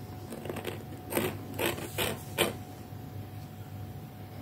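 Four short clicks and scrapes in quick succession, from about a second in to two and a half seconds, as small craft knives are handled on a work table.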